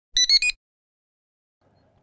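A short electronic chime: four quick high-pitched beeps stepping up in pitch, over in under half a second.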